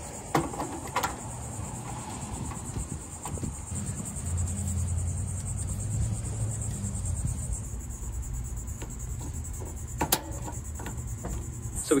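Steady high chirring of insects, typical of crickets. Over it come a few sharp clicks and knocks as a one-pound propane cylinder is fitted to a Camp Chef camp oven's regulator and the oven is lit. A low rumble swells in the middle.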